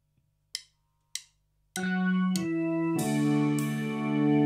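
Two short sharp ticks about half a second apart, then, under two seconds in, a live band starts: sustained electric keyboard chords with drum kit cymbal crashes on the chord changes.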